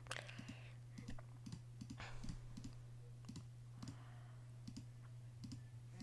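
Faint, scattered clicks of a computer mouse over a steady low hum.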